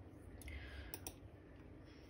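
Faint near-silence broken by a soft rustle and then two quick, sharp clicks about a second in.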